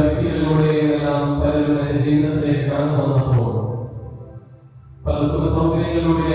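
A man chanting a sung prayer in long, held notes. One phrase fades out about two-thirds of the way through, and the next begins about five seconds in.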